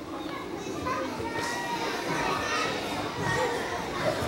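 Many young children talking among themselves at once in a large hall, a steady chatter of overlapping voices with no single speaker standing out.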